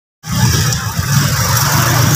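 Motorcycle engine running close by on the street, a steady low drone with traffic noise over it, starting abruptly about a quarter second in.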